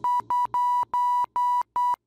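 Voicemod's censor bleep: a steady high beep tone switched on and off into about seven short beeps of uneven length, standing in for speech.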